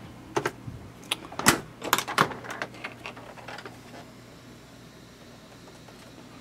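Clicks and knocks from a Dometic RV refrigerator's doors being handled: a quick, irregular run of them over the first three or four seconds, loudest about one and a half and two seconds in.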